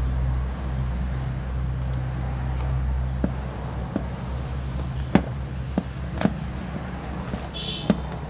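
Small sharp clicks and taps from fine wires and a diode lead being handled and twisted together by hand, about half a dozen spread over the middle and end. Under them runs a steady low hum.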